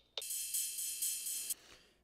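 Sampled electronic percussion played back from a mix: a single bright, cymbal-like metallic hit that rings for about a second and a half, then is cut off abruptly, leaving a faint short tail.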